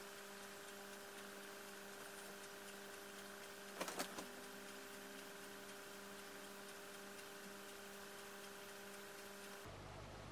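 Quiet room with a faint steady hum made of several level tones, and a brief cluster of soft clicks about four seconds in.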